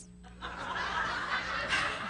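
Laughter from a roomful of people, starting about half a second in and carrying on.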